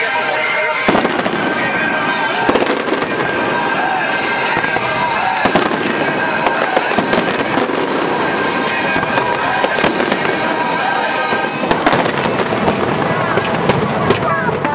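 Fireworks display going off: many bangs in quick succession, with a dense run of bangs near the end.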